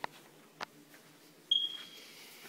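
Footsteps going down carpeted stairs, two soft knocks, then about one and a half seconds in a single short high-pitched electronic beep that rings briefly and fades.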